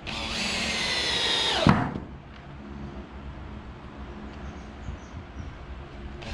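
Cordless drill-driver running into a pine batten on a wooden door for about a second and a half, its motor whine dropping in pitch as it stops.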